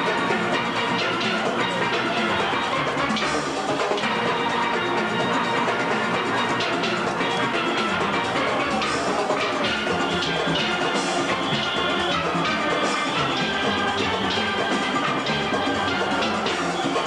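A steel band playing: many steelpans ringing together over drums and percussion, with no break.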